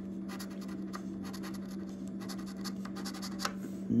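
A coin scratching the latex coating off the bonus-game spots of a scratch-off lottery ticket in a rapid series of short strokes.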